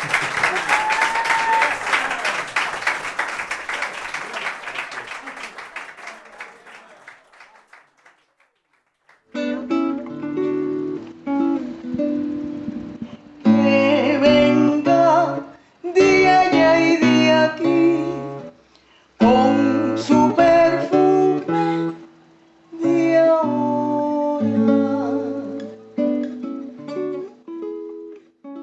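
Live audience applause fading away over the first several seconds, then, after a brief silence, an acoustic guitar playing in short phrases broken by brief pauses.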